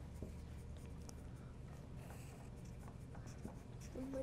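Pencils scratching faintly on paper as several people write at a table, over a low steady hum.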